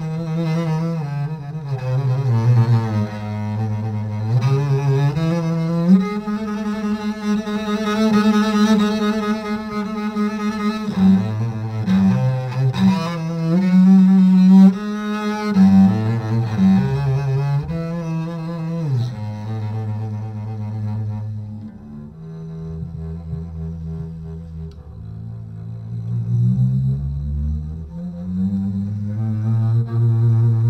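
Double bass played with the bow: low held notes with vibrato moving from note to note, with quicker note changes in the middle and a quieter, lower passage later on.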